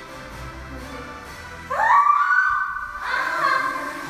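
A young woman's cry of pain, rising sharply about halfway through and held for about a second, then more high cries near the end, as her legs are pressed into a forced oversplit stretch; music plays underneath.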